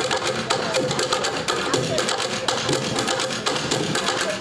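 Bucket drumming: several players striking upturned plastic buckets in a fast, busy rhythm of sharp hits.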